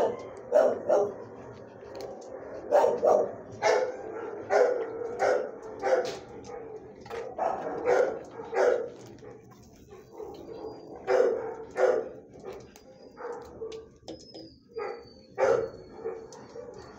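Dog barking repeatedly in a shelter kennel, single and double barks coming irregularly every half second or so. There is a short lull a little past the middle before the barking picks up again.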